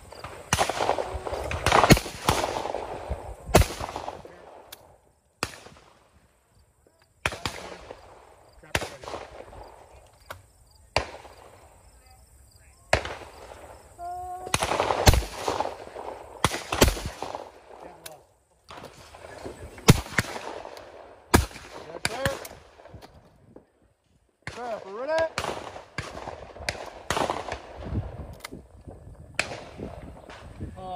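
Shotgun fired at clay targets in pairs, the two sharp shots of each pair under two seconds apart, with fainter shots in between.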